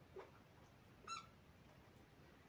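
Near silence with a brief, faint squeak of a marker pen on a whiteboard about a second in.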